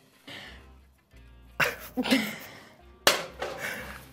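A woman laughing in two short, sudden bursts over soft background music.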